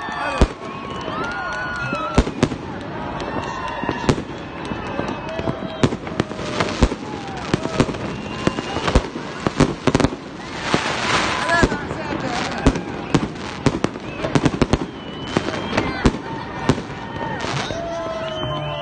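Aerial fireworks display: a rapid, irregular string of sharp bangs and crackles from bursting shells, thickest about ten to twelve seconds in.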